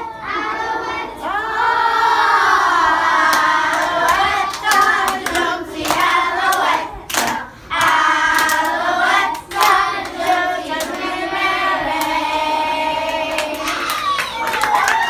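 A group of young children singing together, loud and energetic, with short breaks in the phrases. A few sharp hand claps or slaps fall among the singing.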